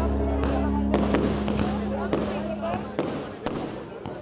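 Small fireworks popping and crackling in sharp, separate cracks, with voices of a crowd, over music that fades and stops about three seconds in; the whole sound fades down toward the end.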